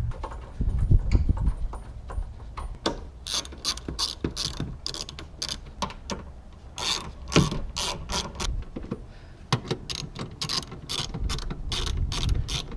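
Ratchet socket wrench clicking in several quick runs as floor-panel bolts are snugged down part way.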